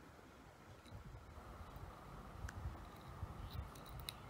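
Faint handling noise: soft low bumps of movement with a few small, light clicks.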